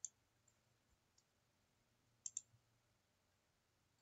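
Computer mouse clicks over near silence: a single click at the start and a quick double click a little past two seconds in.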